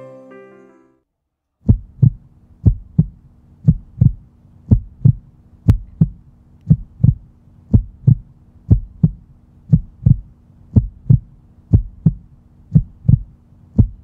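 Heartbeat sound effect: paired lub-dub thumps about once a second over a steady low drone, starting just under two seconds in after the music drops out.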